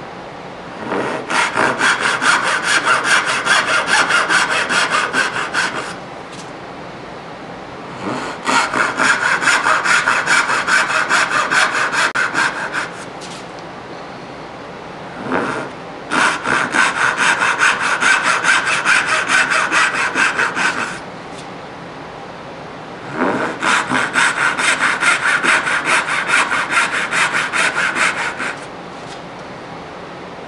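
Hand-sawing dovetail tails in a maple board with a backsaw: four separate cuts, each a run of quick, even strokes lasting about five seconds, with short pauses between.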